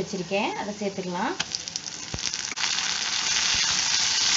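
Chopped tomatoes tipped into hot oil with frying onions in a clay pot: a scatter of small spattering crackles, then a dense sizzle that swells to full strength a little past halfway. A few dull knocks of a wooden spatula stirring against the clay pot.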